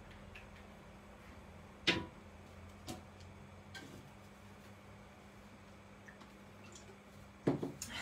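A few small knocks and clicks of paint bottles and tools handled on a craft table, the loudest about two seconds in and two fainter ones about a second apart after it, over a steady low hum of room tone.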